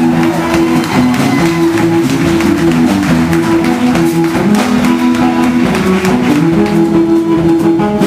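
Live blues band playing an instrumental stretch: acoustic and electric guitars over a drum kit, with held guitar notes and a steady drum beat.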